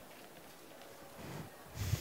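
Low murmur of the tent, then near the end a short, loud breath close to a headset microphone.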